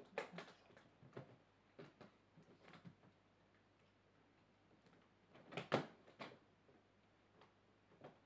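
Faint, scattered clicks and light knocks of an aluminium DVD carry case being handled as its lid is closed and latched.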